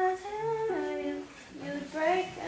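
A voice humming a wordless melody, holding notes and sliding from one pitch to the next, with a short pause before the next phrase.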